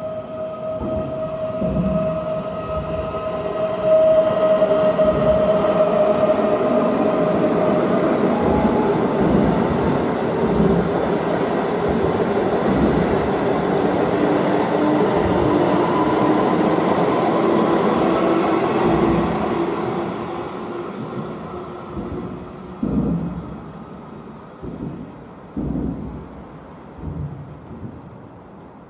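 Electric passenger train running through the station: a steady electric whine at first, then loud rolling noise of wheels on rails for about fifteen seconds that fades away, with a few separate thumps of wheels over rail joints near the end.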